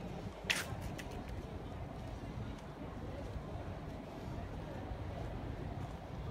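Outdoor background: a steady low rumble with faint, indistinct voices. A single sharp click comes about half a second in, with a few fainter ticks after it.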